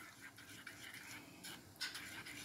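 Faint scraping of a metal spoon in a small ceramic bowl, with a brief sharper scrape near the end.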